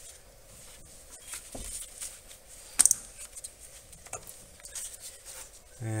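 Glow plug wiring harness being worked up out of its cavity on a Volkswagen ALH TDI diesel by a gloved hand. Faint rustling and scraping of the wires, a soft knock, then one sharp plastic-and-metal click about three seconds in.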